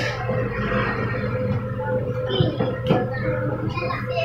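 Classroom room sound: a steady low hum under a busy mix of light knocks and clatter from children handling plastic bowls and paper at a craft table, with a couple of sharper knocks in the middle.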